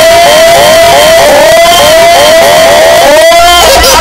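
A cartoon character's long, drawn-out laugh, a run of 'ha' syllables about three a second, each rising and falling in pitch. It is extremely loud and overdriven, close to full scale, and cuts off abruptly at the end.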